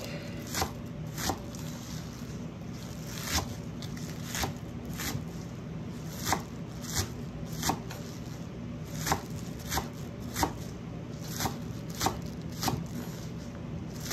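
Knife chopping green onion tops on a wooden cutting board: a run of separate sharp knocks at an uneven pace, about one to two a second, over a steady low hum.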